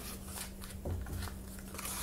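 Faint rustling and light scraping of cardboard toilet-paper tubes nested inside one another, being worked by hand, over a steady low hum.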